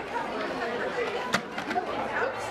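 Many children chattering at once, with overlapping voices in a large, echoing hall. A single sharp click about a second and a half in.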